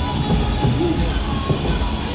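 A steady low motor rumble, with faint crowd voices over it.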